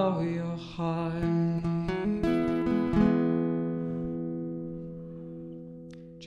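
Acoustic guitar closing a song: a held sung note ends just after the start, then a few picked notes and a final chord that is left to ring and fade away.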